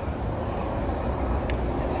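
City street traffic noise: a steady low rumble of passing cars and engines, with a faint click about halfway.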